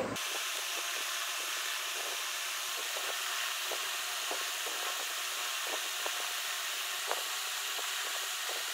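Steady background hiss with faint, irregular snips of large scissors cutting cotton cloth.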